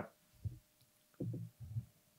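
Soft, low closed-mouth vocal murmurs: a short one about half a second in, then two in quick succession near the end, like an 'mm-hmm'.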